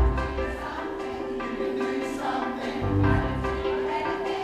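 A large mixed-voice community choir singing live, holding long sustained notes together. Deep bass notes come in near the start and again about three seconds in.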